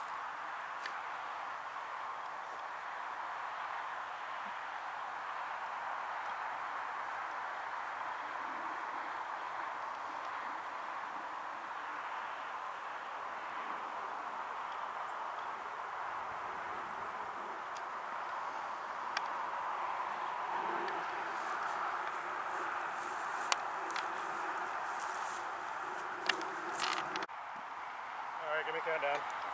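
Steady outdoor background hiss, with a few sharp clicks and rustles in the last several seconds.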